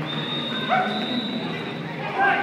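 A single long, steady whistle blast lasting almost two seconds, like a referee's whistle, over the voices of players and spectators. A short yelp cuts in about two-thirds of a second in.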